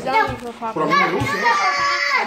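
A young child's voice vocalizing without clear words, ending in one long high-pitched held note.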